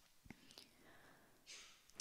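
Near silence in a pause between spoken sentences, with a faint click about a quarter second in and a soft breath intake near the end.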